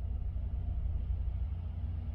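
Steady low rumble with a faint, even hum: background noise inside a motorhome, with no other event standing out.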